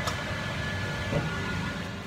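Steady whirring hum of workshop machinery, with one light knock at the very start as the wooden scrap is handled.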